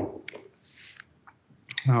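A sharp click at the start, then a few softer mouth clicks and a breath from a man pausing mid-talk, before his speech resumes near the end.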